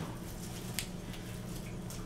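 Quiet room tone with a steady low hum and one faint click a little under a second in.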